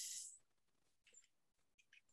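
Near silence: room tone, after a short faint hiss fades out in the first half second, with a few tiny faint ticks.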